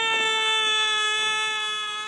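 A person's long scream held on one steady pitch, slowly fading.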